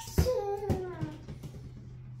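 A young child's high-pitched, singsong vocalising in the first second, with two sharp thumps about half a second apart, the first the loudest, over a steady low hum.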